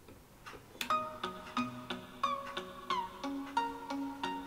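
Electronic music playing through a small loudspeaker driven by a homemade TDA2030 amplifier. It comes in just under a second in as a melody of short, sharply struck notes, about three a second.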